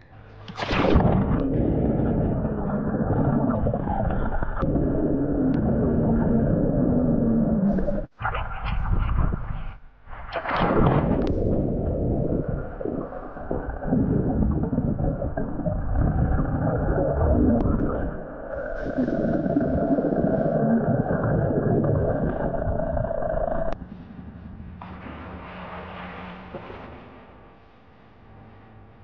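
Muffled underwater sound of a swimming pool picked up by a submerged camera: dense, low, rumbling water noise with a few abrupt breaks. About three-quarters of the way through it drops to a quieter, even hiss.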